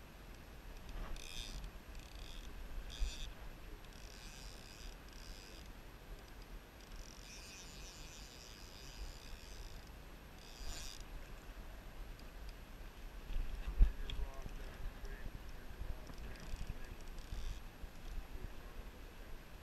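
A fly reel's click drag buzzing in several separate spurts as a hooked steelhead pulls line off, over low wind rumble on the microphone, with one sharp knock about fourteen seconds in.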